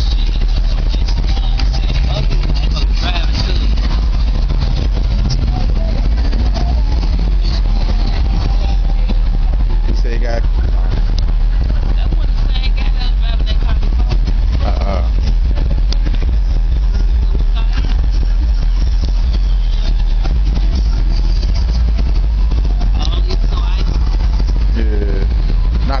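Cars cruising slowly past one after another, over a steady low rumble, with scattered voices of an onlooking crowd.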